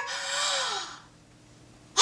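A woman's long, breathy, rapturous sigh, falling in pitch and dying away about a second in.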